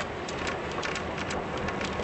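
Steady hiss with irregular crackles over a low rumble, the noise inside a car.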